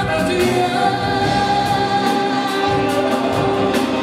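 Live band music of a pop-rock group with drums and cymbals, under a male lead vocal singing long held notes with a choir-like vocal sound.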